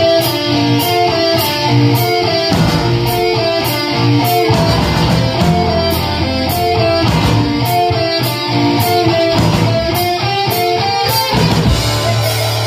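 Heavy metal band playing live: electric guitar picking a repeating melodic riff over bass and drums, with cymbals struck on a steady beat. The riff gives way to a new section near the end.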